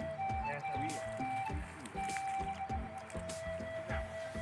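Background music with a long held note under shorter notes.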